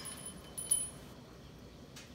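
Small metal bell on a parrot cage toy ringing, struck sharply once, its high ring stopping about halfway through.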